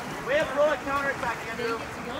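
Raised voices calling out from the poolside in short bursts, not clearly worded, over a steady wash of water polo players splashing as they swim.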